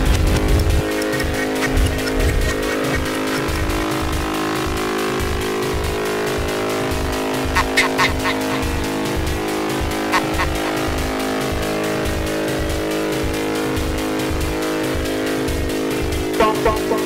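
Live electronic music played on synthesizers and a drum machine: sustained synth tones over a steady pulsing bass and fast ticking hi-hats. The heavy bass thins out about a second in, and a few short high synth stabs come in about eight and ten seconds in.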